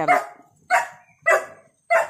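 A dog barking: about four short barks, evenly spaced a little over half a second apart.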